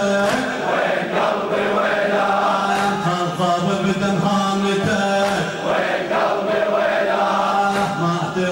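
Crowd of men chanting a Shia mourning (latmiya) refrain together, their hands striking their chests in unison in a slow beat about every two and a half seconds.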